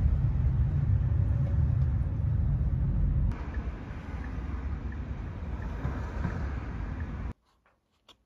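Steady low rumble of road and engine noise inside a moving taxi's cabin. A little over three seconds in it gives way to a quieter, even hiss of outdoor street ambience, which cuts off abruptly near the end.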